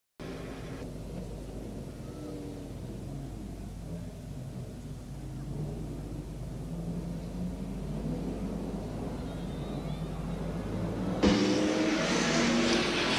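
Speedway saloon cars racing round a dirt oval: a steady drone of several engines that slowly grows louder, then jumps much louder about eleven seconds in as the cars come close.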